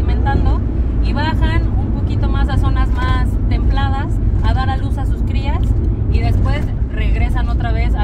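A woman speaking Spanish over the steady low rumble of a moving vehicle, heard from inside the cabin.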